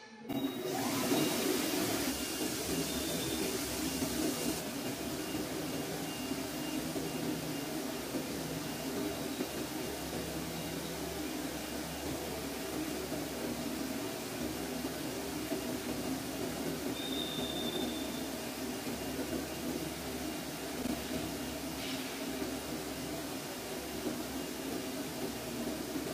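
Flatbed CNC gasket cutting plotter running as it cuts gasket sheet: a steady rushing machine noise, with a brighter hiss for the first few seconds.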